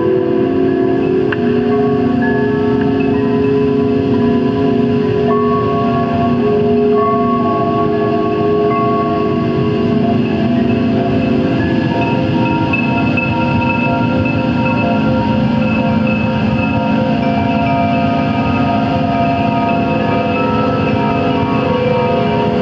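Live electronic drone music worked from a mixing desk: several sustained tones layered together, shifting pitch every few seconds, over a steady low noisy rumble.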